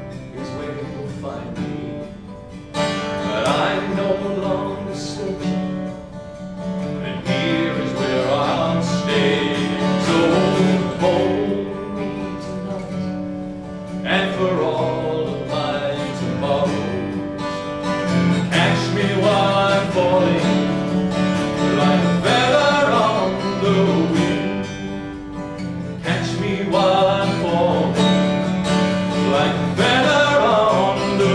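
Solo acoustic guitar playing an instrumental passage of a folk song, with a repeating pattern of picked notes and chords throughout.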